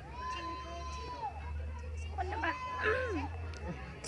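Faint high-pitched voice sounds, drawn out and rising and falling, about a second each. A steady low hum runs underneath.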